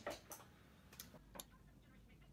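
Near silence broken by a few brief, faint clicks and rustles from handling makeup: two close together at the start, then two single clicks about a second in and just after.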